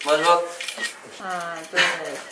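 Young men's voices giving short excited calls and yelps with sliding pitch, the loudest a sharp shout near the end.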